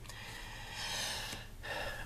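A man's long audible breath in, followed by a second shorter breath just before he speaks again.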